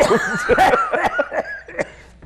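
Two men laughing, the laughter dying down near the end.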